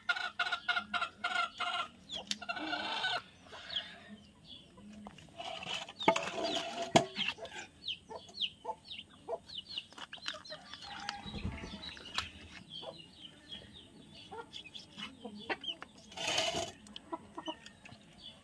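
Chickens clucking, most steadily in the first three seconds, alongside the knocks and scrapes of a kitchen knife cutting fish on a wooden log chopping block, with two sharp knocks about six and seven seconds in.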